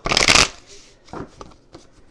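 Tarot cards being shuffled by hand: a loud, quick burst of card flicking lasting about half a second, followed by a few soft taps as the deck settles.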